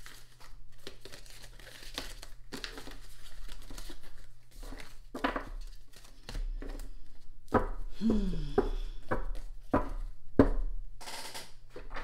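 A deck of oracle cards being shuffled and handled: a run of papery rustles and sharp card clicks, with a short falling tone about eight seconds in and a steady low hum underneath.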